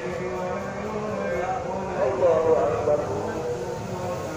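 Chanted recitation of the tarawih night prayer carried over a mosque loudspeaker: a single voice holding long, drawn-out melodic tones, rising into a wavering flourish about halfway through.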